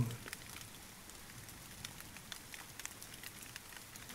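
Steady rain: a soft, even hiss scattered with small drop ticks.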